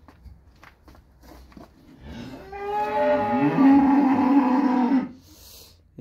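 A cow mooing once, a long call of about three seconds that starts about two seconds in, its pitch dropping partway through.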